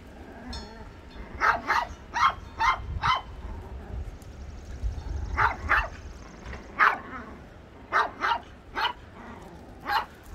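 Small dogs barking in short, high yaps during play-chasing, about a dozen in loose clusters: a quick run of six in the first few seconds, then pairs and singles.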